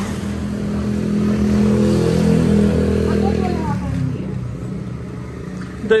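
A motor vehicle's engine running close by with a steady low hum. It grows a little louder about two seconds in, then fades away about four seconds in.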